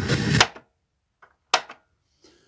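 Loud hiss-like static from a boombox's speakers that cuts off abruptly as the source selector button is pressed, followed by a couple of short clicks.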